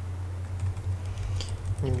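Computer keyboard keys tapped in a quick run of keystrokes, typing a search term, over a steady low electrical hum.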